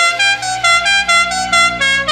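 A radio show's jingle: a quick tune of about ten short, horn-like notes, roughly five a second, stepping up and down in pitch.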